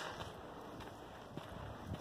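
Faint, steady wind noise on the microphone, with no distinct events.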